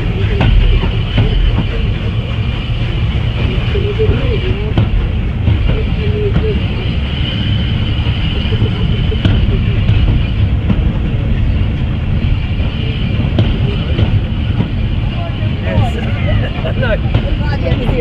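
Steam-hauled train pulling slowly out of a station, heard from an open carriage window: a steady, loud, deep running rumble, with people's voices from the platform at moments, most clearly near the end.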